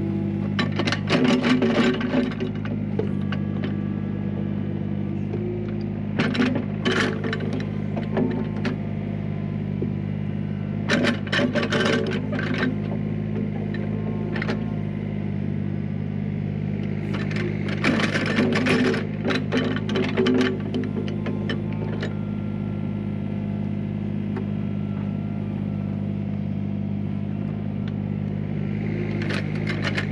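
Doosan DX27Z mini excavator's diesel engine running at a steady pitch, with short bursts of clanking and rattling every few seconds as the bucket works a pile of soil.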